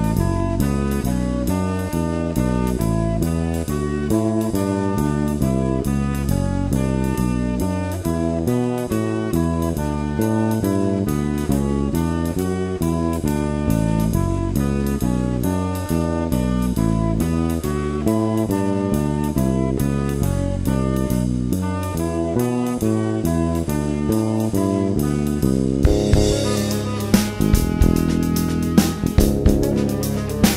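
Jazz trio of tenor saxophone, bass and drum kit playing an up-tempo tune, the sax carrying the melody over a moving bass line. About four seconds before the end the drums grow louder and busier, with sharp cymbal and drum hits.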